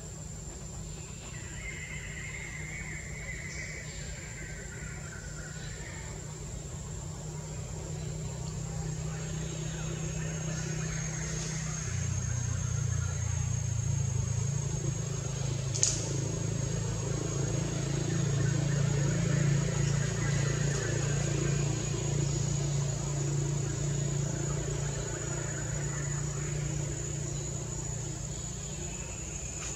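Outdoor ambience: a steady high-pitched drone, a low hum that grows louder about twelve seconds in, and a falling animal-like call in the first few seconds, with one sharp click near the middle.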